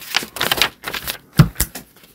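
Paper pages being turned and handled, a string of crisp rustles and flicks with a louder one about one and a half seconds in.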